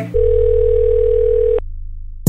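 A single steady telephone tone, like a dial tone, held for about a second and a half over a low bass note from the backing beat. The tone cuts off suddenly and the bass carries on more quietly.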